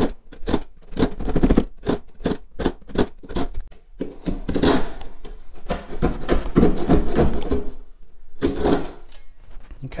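OX hand saw cutting across a wooden floorboard in steady back-and-forth strokes, about three a second at first, then quicker and closer together. The strokes stop briefly near the end, then a few more follow.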